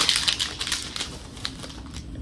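Crinkling and rustling of a gauze dressing and its wrapper being handled in gloved hands. A quick run of small crackles and clicks in the first second or so gives way to fainter rustling.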